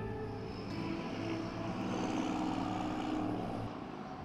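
Downtown street traffic: vehicles passing, a steady wash of engine and tyre noise with a faint low drone. The last note of a guitar music bed fades out about half a second in.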